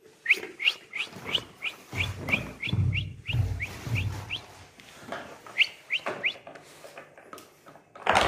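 A toddler's squeaky shoes chirping with each step: a run of short, high rising squeaks about three a second, a pause, then three more.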